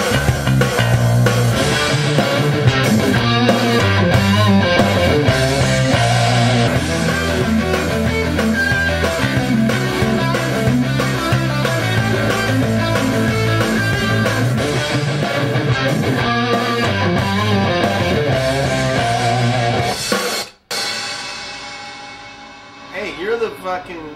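Rock music of electric guitar and bass playing over drums, cutting off abruptly about twenty seconds in; a man starts talking just before the end.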